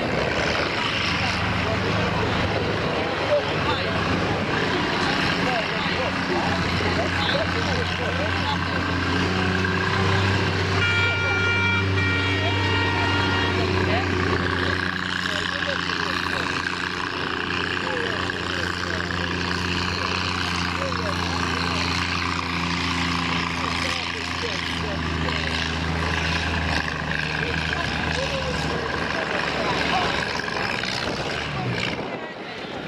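A compact tractor's engine running steadily at low speed under light load as it creeps through a course, with a short high-pitched tone about eleven seconds in.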